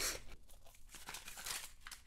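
Wrapping on a toy capsule ball crinkling and tearing as it is cut and pulled open, with a short burst of rustle at the start, then faint scattered rustles and small clicks.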